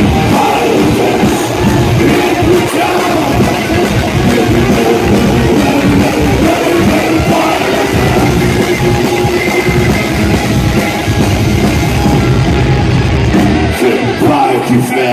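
Live rock band playing loud: distorted electric guitars over bass and a drum kit, in a concert hall.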